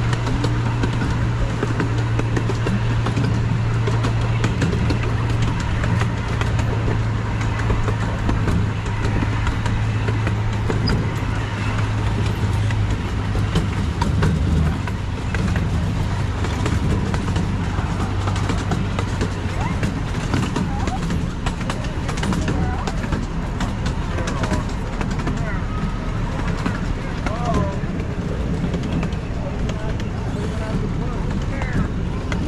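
Miniature train running along its track: a steady low engine drone that drops slightly in pitch partway through, over a continuous rattle and clicking of the cars on the rails. Passengers' voices can be heard faintly beneath it.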